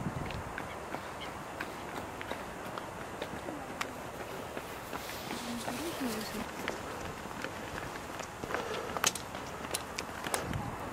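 Footsteps on a path with scattered light clicks over a steady outdoor hiss, and faint voices of people a little way off, heard briefly about halfway through.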